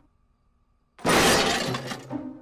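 Near silence for about a second, then a sudden loud shattering crash like breaking glass that dies away over the following second: a cartoon smash sound effect.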